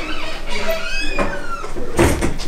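Wooden door swinging shut, squeaking as it closes, with short squeals gliding up and down in pitch.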